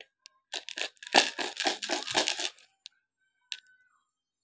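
Beads rattling and tumbling inside a homemade mirror kaleidoscope as it is turned: a dense clatter of small clicks for about two seconds, then a single click near the end.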